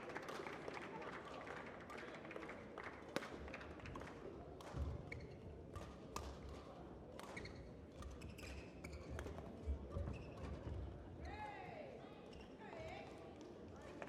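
Badminton rally: sharp racket strikes on the shuttlecock at irregular intervals, with the thud of footwork on the court floor. Faint background voices are heard in the large hall.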